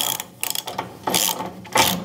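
Socket ratchet wrench clicking in about four quick back-and-forth strokes as it runs a nut down onto a bolt.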